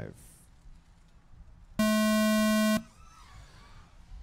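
Electronic race start tone: a single steady, buzzy tone lasting about a second, sounding near the middle. It signals the start of an FPV drone race heat.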